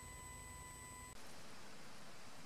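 Faint steady background hiss with thin, faint steady tones, changing about a second in to a slightly louder, even background noise with no distinct event.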